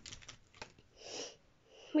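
Faint clicks and rustles of plastic action figures being handled, then a short breath close to the microphone about a second in.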